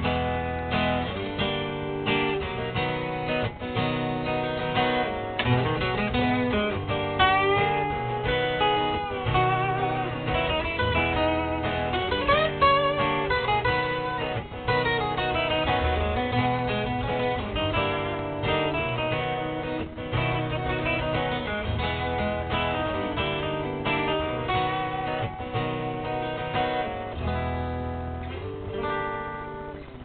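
Acoustic guitar strummed in an instrumental outro, no singing, with a few sliding notes in the middle; it fades a little near the end.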